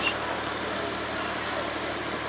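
A steady, even engine-like hum, with no blasts or shots.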